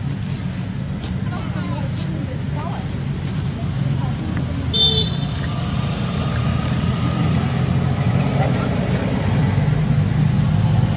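Steady low rumble of motor traffic or an engine running nearby, with faint voices in the background and a short high-pitched chirp about five seconds in.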